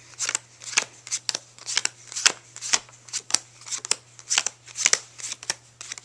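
Playing cards being dealt one by one onto four piles: a quick, irregular run of short card snaps and slides, about three a second.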